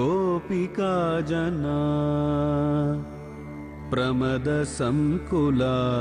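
A solo voice chants a Sanskrit devotional verse in a Carnatic melodic style, with long held notes and sliding ornaments over a steady low drone. The voice breaks off about three seconds in and resumes about a second later with shorter phrases.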